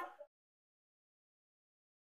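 Near silence: the last of a spoken word trails off in the first quarter second, then the sound track is completely silent.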